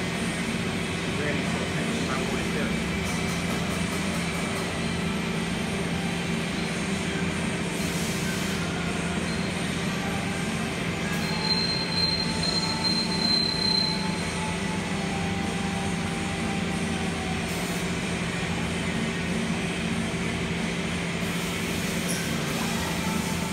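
Steady machine hum from a running CNC lathe cell while a robot arm loads and unloads parts. About halfway through, a thin high-pitched whine rises above the hum for roughly three seconds.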